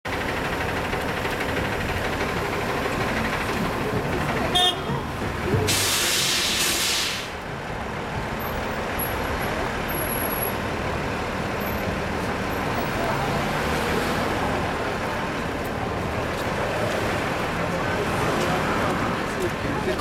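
City street traffic at an intersection, with vehicle engines running throughout. About four and a half seconds in there is a brief horn toot, followed by a loud hiss of air-brake release that lasts about a second and a half.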